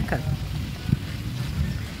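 Low, steady rumble of wind buffeting the microphone while riding a bicycle, with one short knock about a second in.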